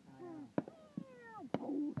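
Three sharp pops of fireworks, about half a second apart, with drawn-out vocal sounds falling in pitch between them.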